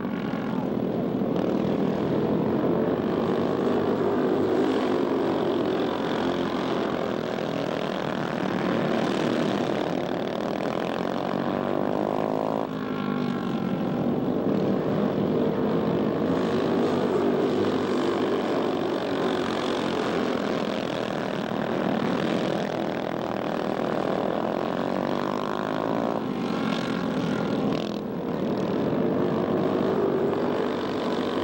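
Racing go-kart engines buzzing continuously, their pitch rising and falling over and over as the karts accelerate down the straights and back off into the corners. The sound changes abruptly about 13 seconds in and again about 26 seconds in.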